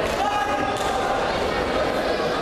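Echoing voices and chatter in a sports hall, with a thud near the start and another about three-quarters of a second in as judoka hit the tatami mat.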